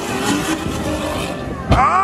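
Engine of a stripped-down car with a roll cage, revving as it flies off a dirt jump. Near the end a louder engine rev suddenly rises in pitch and holds steady.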